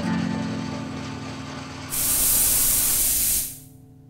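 A strummed guitar chord ringing out and fading, then about two seconds in a loud burst of hissing steam that holds for about a second and a half before dying away.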